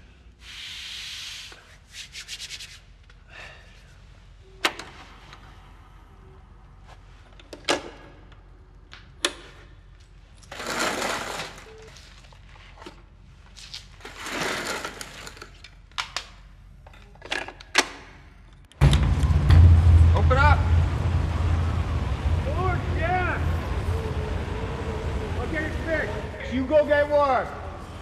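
Handling sounds: small clicks, knocks and paper-like rustles, with quiet between them. About two-thirds through, a sudden cut to loud blizzard wind with a low rumble.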